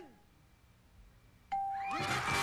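A pause, then about one and a half seconds in a single bright bell ding rings out and holds from the game-show scoreboard: the sound of an answer being revealed as scoring points. Excited voices start right at the end.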